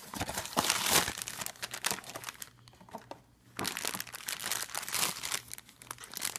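Crinkling and rustling of a thin black plastic blind-box bag as it is handled and cut open with scissors. There is a quieter break of about a second near the middle.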